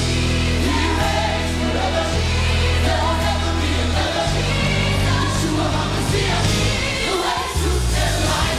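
Live gospel worship song: a group of singers at microphones with a choir behind them, singing over a band with sustained low bass notes that change every couple of seconds.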